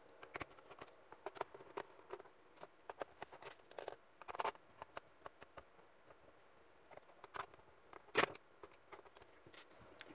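Light, irregular clicks and taps of a Phillips screwdriver and fingers on an Asus X555L laptop's plastic bottom case as its screws are taken out, with a sharper knock about eight seconds in.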